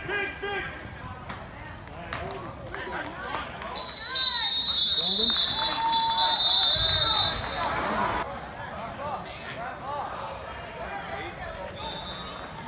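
Referee's whistle blown in one long, shrill blast of about three and a half seconds, starting about four seconds in: the play being whistled dead. Shouting voices of players and spectators go on around it.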